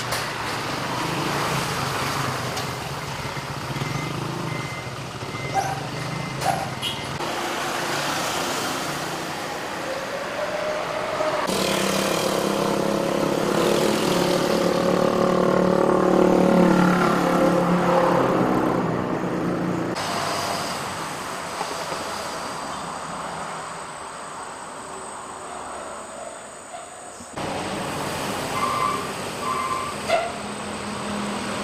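Road traffic: vehicles passing, with an engine tone rising and falling loudest in the middle. The background changes abruptly several times.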